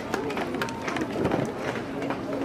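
Indistinct voices and chatter of people around a baseball field, with a few faint clicks and knocks in the background.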